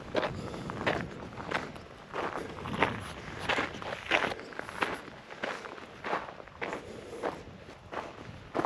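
Footsteps of a person walking at a steady pace on dry, rocky desert dirt and gravel, about one and a half steps a second.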